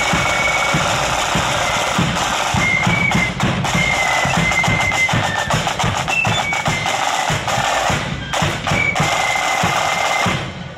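Marching flute band playing a tune: flutes carry a high melody over rolling snare drums and steady drumbeats.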